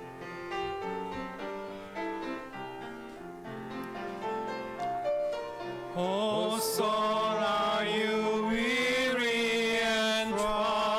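Piano playing a hymn introduction in separate held notes; about six seconds in, a man's voice comes in through the microphone, leading the singing of the hymn over the piano.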